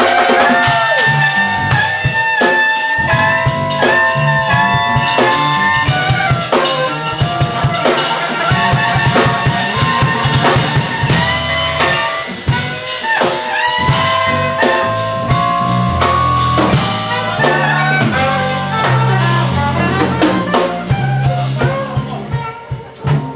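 Live jazz band playing: a saxophone carries a lead line of held and bending notes over piano, drum kit and bass.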